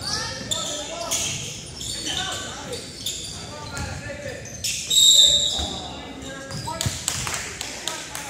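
Basketball game in a large gym: players' voices calling out, sneakers squeaking and the ball bouncing on the hardwood, with the hall echoing. About five seconds in comes a short, shrill high tone, the loudest sound of the stretch.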